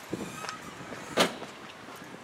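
Footsteps on paving stones at a walking pace, a step every half second or so, the loudest a sharp knock or scuff about a second in, over faint street hiss.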